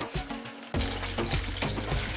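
Batter-coated paneer cubes deep-frying in hot oil in a kadhai, a steady sizzle, under background music. The sound jumps up in level about three quarters of a second in.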